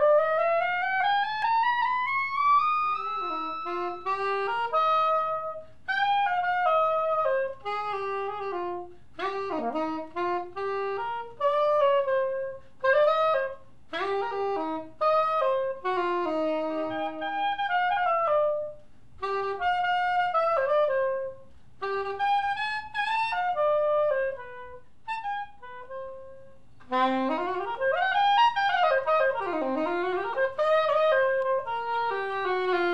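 Conn Chu Berry New Wonder straight soprano saxophone played solo: a long rising run at the start, then short melodic phrases separated by brief pauses, and quick runs up and down near the end.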